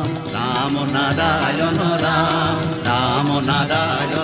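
Bengali nam-sankirtan devotional music: a wavering melodic line over steady low notes, with no words in this stretch.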